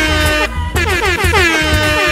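Music with a DJ air-horn sound effect over a steady bass beat: a rapid string of short horn blasts that each slide down in pitch, ending in a longer held blast near the end.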